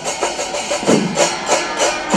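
Kerala temple percussion ensemble (melam) playing: drums and clashing cymbals beating out a fast, even rhythm of about three strokes a second over a steady din.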